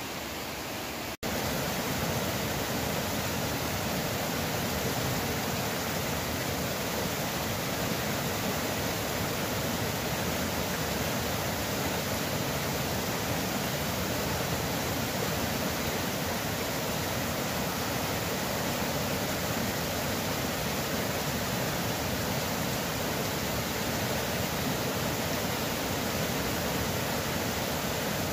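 Whitewater creek rushing over rocks in a steady, even wash of water noise. It breaks off briefly about a second in, then carries on slightly louder.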